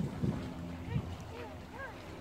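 Wind rumbling on the microphone outdoors, with a few brief, faint voice sounds from people nearby.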